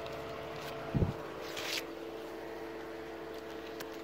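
A steady low machine hum, with a soft thump about a second in and a brief rustle just after.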